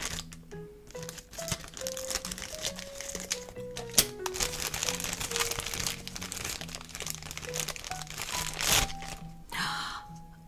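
A shiny black foil toy bag crinkling as it is cut open with scissors and pulled apart, with a sharper crackle about four seconds in. A simple background melody plays throughout.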